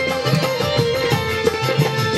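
Loud live band music: hand drums keep a steady rhythm under a plucked-string part and a long, held melody line.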